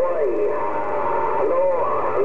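A man's voice coming in over the HR2510 radio receiver from a distant station. It sounds thin and band-limited, and the words are not clear.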